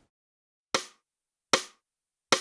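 Two sharp percussive clicks about 0.8 s apart, the first about three-quarters of a second in after silence: an evenly timed count-in beat.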